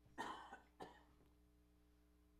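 A person coughing twice: a longer cough just after the start and a short one about a second in.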